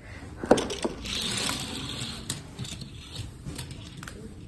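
Handling noise as small items are put away into a small box on a table: a sharp tap about half a second in and a lighter one just after, then about a second of rustling and scattered small clicks.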